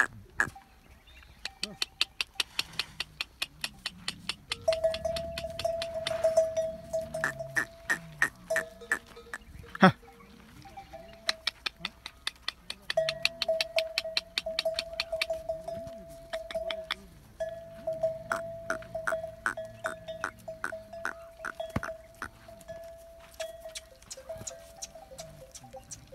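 Camel bells clanking in quick runs of several strikes a second, over a held ringing tone, as the dromedary herd moves about.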